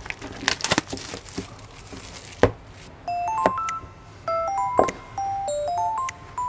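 Tear strip of a small boxed product's wrapping being pulled off by hand, crinkling and rustling, ending in a sharp snap about two and a half seconds in. Then background music of plinking, bell-like notes starts, with a single knock of the box being handled near the middle.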